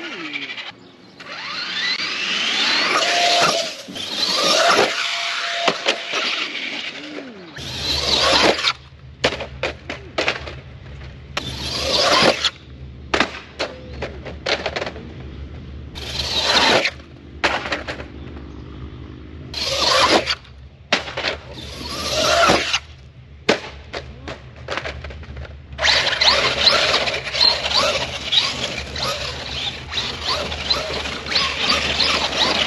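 Brushless-converted Traxxas Rustler RC truck making repeated high-speed passes: bursts of electric motor whine that rise and fall in pitch, mixed with tyre noise on pavement, several times over with quieter gaps between.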